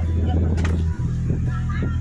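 Music with a heavy, steady bass, with people's voices chattering in the background; the music drops out for an instant about halfway.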